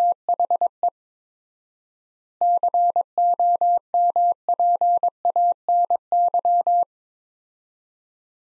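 Morse code sent as a keyed single-pitch sine tone at 22 words per minute, repeating the words "THE COMPANY". A short group of dits and dahs for "THE" is followed by a pause of about a second and a half, extra spacing at four times normal, then a longer run for "COMPANY".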